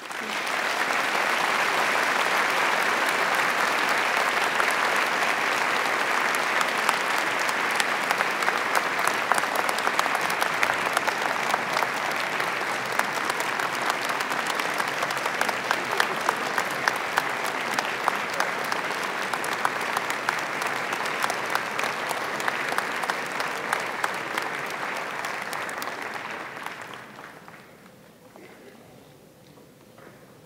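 Large audience applauding, many hands clapping in a dense, steady wash that starts at once and dies away in the last second or two.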